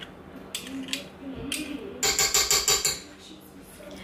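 A metal spoon scraped clean with a spatula over a stainless steel mixing bowl, with scattered scrapes and clicks and then a quick run of about nine short scraping strokes about two seconds in.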